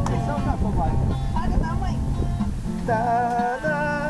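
Acoustic guitar strummed, with people's voices over it and a held sung note starting about three seconds in.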